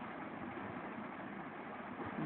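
Steady background noise, an even hiss with no distinct events, in a pause between speech.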